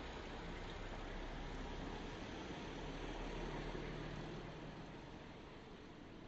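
Steady background noise with a faint low hum in the middle, slowly fading toward the end.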